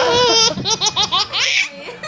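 Toddler laughing while being tickled: a high-pitched drawn-out squeal of laughter, then a quick run of about five short laughs that dies away near the end.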